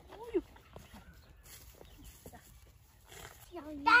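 Faint footsteps and rustling in dry rice stubble, with one short pitched voice-like call just after the start. A child's voice begins near the end.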